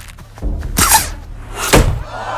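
Two sudden, loud noisy hits with a deep thud under each, about half a second in and again near the end: sound effects in an animated film clip.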